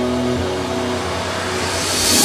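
Trance music: a held synth chord drops away in the first half-second and a rising white-noise sweep builds up towards the beat.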